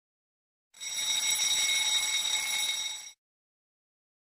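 Countdown timer's alarm ringing once for about two and a half seconds as the timer reaches zero, signalling that time is up. It starts and cuts off suddenly, a steady high ring.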